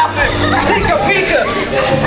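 Indistinct chatter: several voices talking and calling out over one another, with no clear words.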